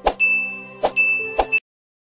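Subscribe-button animation sound effects: three sharp clicks, each followed by a short bright ding, over a held synth chord. The sound cuts off abruptly about one and a half seconds in.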